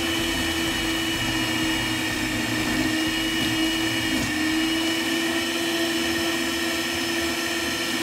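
Electric stand mixer running at a steady speed, its motor giving a constant even whine.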